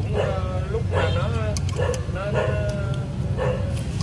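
A dog yelping and whining over and over: a string of short, high, wavering calls, several each second, over a steady low hum.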